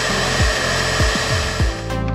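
Bee vacuum motor running steadily, drawing honeybees off exposed comb through a corrugated hose, with the thump of background music's beat underneath. The vacuum noise drops out near the end as the music takes over.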